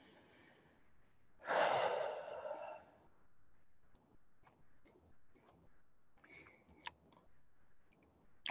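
A woman's long breathy exhale, a sigh lasting over a second about a second and a half in, catching her breath after a hard set of exercise. Faint small clicks follow, with one short sharper tick near the end.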